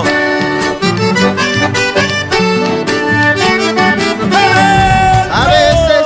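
Accordion playing a chamamé melody in held, chord-rich notes over a bass accompaniment, with no singing.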